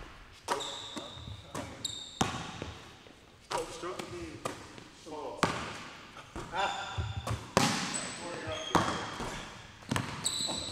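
A basketball bouncing on a hardwood gym floor, in irregular sharp thuds, with brief high sneaker squeaks and voices calling out now and then.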